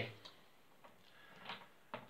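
Faint, scattered small clicks and ticks from the hand crank and gears of a Rek-O-Kut M-12 overhead as the crank is turned by hand, with a slightly longer soft rub about halfway through.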